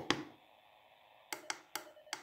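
Clicks from the uSDX transceiver's rotary control knob as it is turned and pressed to step through the menu: one sharp click at the start, then a quick run of four or five lighter clicks in the second half.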